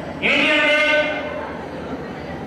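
A man's voice giving a speech through a handheld microphone and PA: one long, drawn-out syllable starting about a quarter second in, then a quieter stretch as it trails off.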